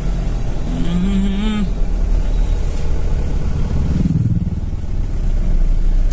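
Steady low rumble of a car heard from inside its cabin while it waits at a traffic signal in a jam, with a brief voice about a second in and a louder low swell around four seconds in.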